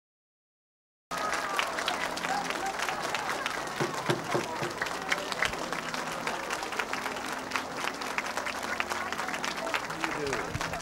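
A large indoor crowd applauding, with voices calling out over the clapping; the sound cuts in abruptly about a second in after silence.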